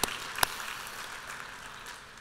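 Audience applause dying away, with two sharp, louder hand claps about half a second apart near the start.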